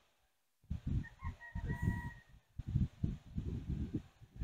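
A low, uneven, gusting rumble of wind on the microphone, with a distant rooster crowing faintly about a second in.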